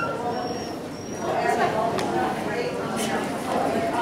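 A dog's thin, high whine in the first second, then a woman's voice talking softly to the dog, with two sharp clicks about a second apart.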